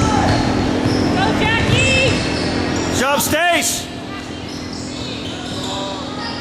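Basketball game in a gym: a ball bouncing on the hardwood court, voices from players and spectators, and a cluster of short sneaker squeaks about halfway through.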